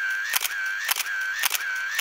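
Camera shutter clicks firing in quick succession, about two a second, each followed by a short steady whine, like a camera snapping photo after photo.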